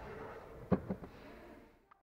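Two light knocks in quick succession, from hands working around the plastic glove box, over faint background noise that then cuts off.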